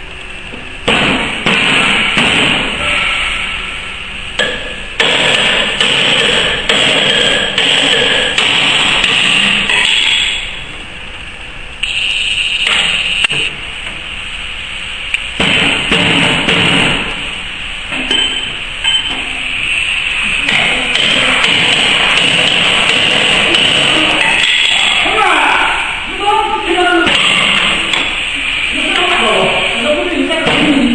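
Indistinct voices and music, with loud noisy stretches that start and stop abruptly several times.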